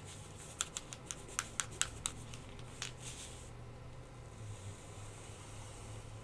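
A Posca acrylic paint marker being shaken by hand, its mixing ball rattling in a quick run of about eight sharp clicks over a second and a half, with one more click shortly after. A low steady hum runs underneath.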